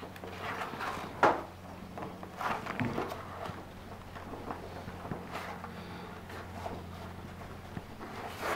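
Gloved hand gripping and twisting a chrome basin tap's collar: fabric rubbing on the metal with scattered small clicks and knocks, the sharpest about a second in. The glove gives too little grip and the collar does not come undone.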